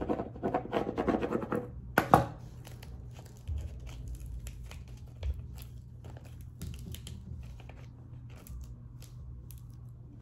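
Clear transfer tape being peeled up with adhesive vinyl off its backing sheet, a crackling peel in the first couple of seconds ending in a sharp rip. Faint scratching and crinkling of the plastic sheets follows as they are handled.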